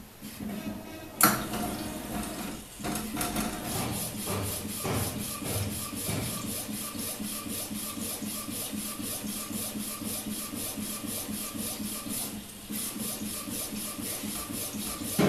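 Desktop A4 UV flatbed printer printing: a sharp clack about a second in, then the print head carriage shuttling back and forth in a steady mechanical rhythm of about four strokes a second over a motor hum. The rhythm pauses briefly near the end and then starts again.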